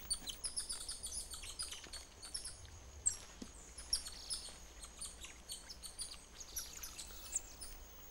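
Golden lion tamarins calling: many short, high-pitched chirps, quickly falling in pitch, scattered throughout. A single light knock comes about three seconds in.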